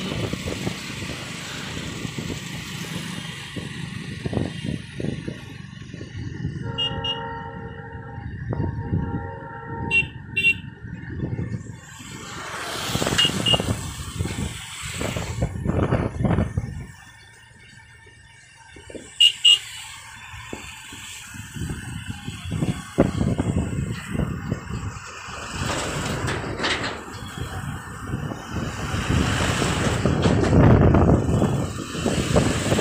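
Road traffic heard from a moving two-wheeler: motorcycle and scooter engines with wind and tyre rumble. A horn sounds for about two seconds about a quarter of the way in, and short high-pitched horn beeps come several times.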